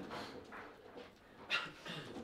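Soft handling sounds at a foosball table: rods shifting in their bearings and faint taps, with a sharper knock about one and a half seconds in.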